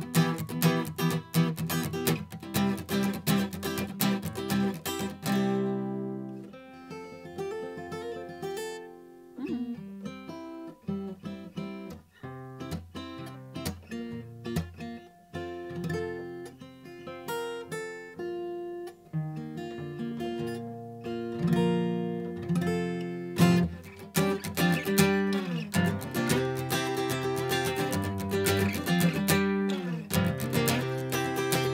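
Mahogany Guild acoustic guitar played with a capo on the neck: strummed chords for about the first five seconds, then single picked notes and arpeggios, then full strumming again from about 24 seconds in.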